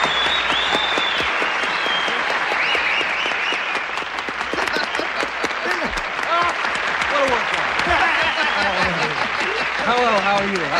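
Studio audience applauding and cheering. Voices shout over the clapping in the second half.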